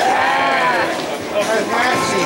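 A drawn-out celebratory yell from a man, rising and then falling in pitch over about a second, followed by a shorter rising call near the end.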